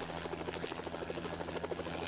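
Helicopter flying overhead: a steady low engine hum with the rapid, even pulsing of its rotor blades.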